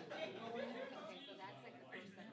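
Indistinct chatter: people talking quietly in a room, with no clear words.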